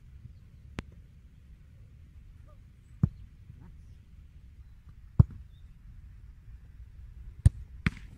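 A football being struck and saved: sharp single thuds, the loudest about three, five and seven and a half seconds in, with two lighter ones, over a low steady rumble.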